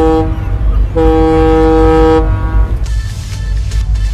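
Motor yacht's horn sounding twice, a short blast and then a longer one of about a second, over a deep steady rumble.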